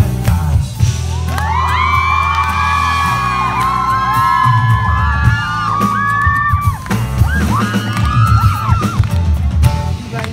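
Live pop band playing: acoustic guitar, drums and keyboard, with long, high held vocal notes over the music.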